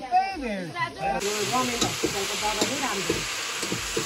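Food sizzling as it is stir-fried in a steel wok, the hiss starting suddenly about a second in, with a utensil stirring through it. Voices are heard in the first second and faintly over the frying.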